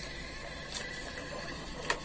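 Small portable receipt printer printing an electricity bill slip: a steady whir, with two short clicks, one under a second in and one near the end.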